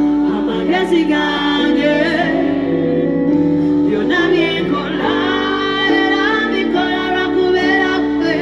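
A woman singing live into a microphone, with vibrato on held notes, over sustained instrumental accompaniment.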